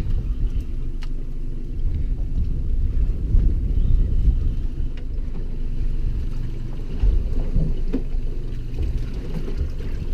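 Low, uneven rumble of wind and water around a small boat drifting at sea, with a few faint clicks.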